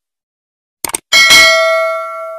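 Subscribe-animation sound effect: a quick double mouse click, then a bright bell ding with several ringing tones that slowly fades, the YouTube notification-bell chime.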